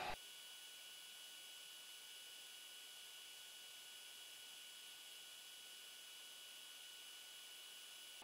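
Near silence: the recording's faint steady hiss, with a thin high whine underneath.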